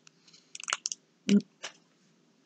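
A few small, sharp clicks in quick succession, then a short "mm" from a person, then one more click.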